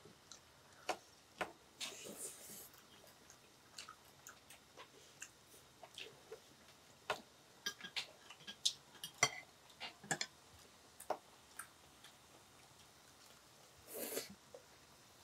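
Quiet, scattered light clicks and taps of chopsticks and metal tongs against plates and the pot at a meal, irregular and a few a second at most, with a brief hiss about two seconds in.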